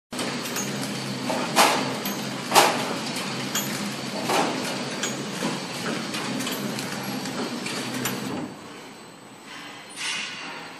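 Horizontal flow packing machine (flow wrapper) running, a steady mechanical noise with a sharp clack about once a second from its cycling mechanism. The noise drops noticeably about eight seconds in.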